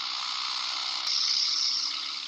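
Steady rushing noise of a small propeller plane in flight, played from a film soundtrack, with little low drone; it gets a little louder about a second in.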